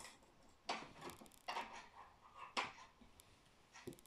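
Faint handling noises: a few brief knocks and rustles as hands move over and away from a plastic snap-together circuit kit on a wooden table.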